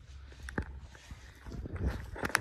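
Footsteps on dry leaves and ground litter, with a couple of sharp clicks about half a second in and crackling steps near the end, over a steady low rumble.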